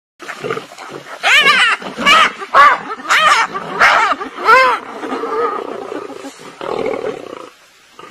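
Hyenas and a lion calling during a fight: about six loud calls in quick succession, each rising and falling in pitch, then quieter, rougher calls that die away near the end.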